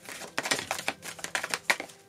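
Tarot cards being drawn from the deck and laid down on a table: a quick, irregular run of light clicks and taps as the cards are handled and placed.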